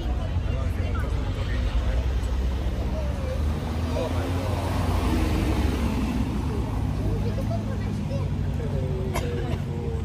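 Aston Martin convertible's engine running at low revs as the car pulls slowly away, a steady low engine note under people talking.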